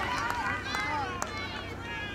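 Footballers' voices shouting and calling across the pitch, several overlapping, with one sharp knock just past a second in.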